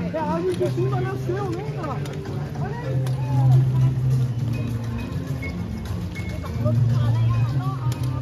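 Chatter of passing people on a busy footpath, several voices overlapping. Under it a low steady drone swells twice, a few seconds in and again near the end.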